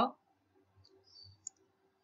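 A single short, sharp click about one and a half seconds in, from the computer input device used to mark points on an on-screen graph, in an otherwise near-silent pause.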